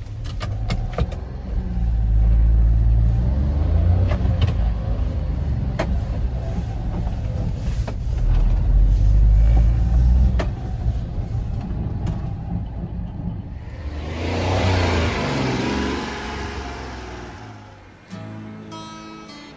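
A 1995 Honda Acty mini truck's small three-cylinder engine pulling the truck along in low gears, heard from inside the cab. The engine note swells twice as it accelerates and then eases off, with scattered clicks and knocks. Near the end there is a short rush of tyre and road noise on wet pavement.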